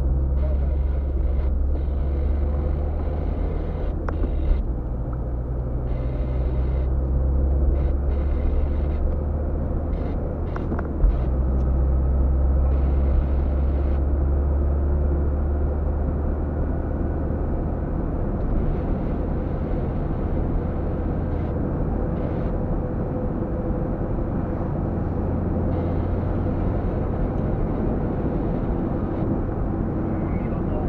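Inside a moving car: the steady low drone of engine and tyres on the road, with a few brief knocks, the sharpest near the middle.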